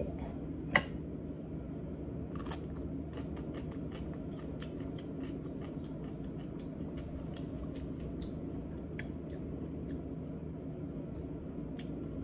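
Raw radish being chewed: a run of small, sharp, irregular crunches over a steady low room hum, after a single light clink under a second in.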